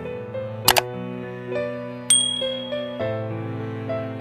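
Background music with two sound effects: a sharp double mouse click a little under a second in, then a bright bell ding about two seconds in that rings on for about a second, the click-and-bell effect of a subscribe-button animation.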